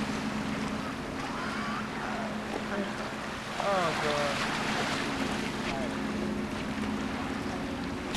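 Harbour ambience: wind on the microphone and water, over a steady low hum. A brief distant voice comes in about four seconds in.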